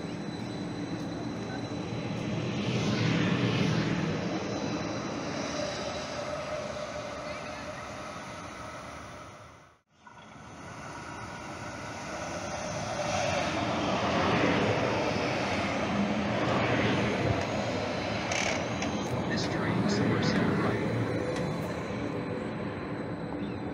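Calgary Transit CTrain light-rail cars running by the platform: a steady rumble of wheels on rail with electric motor hum that swells and fades. It breaks off abruptly about ten seconds in, then builds again as another train comes in.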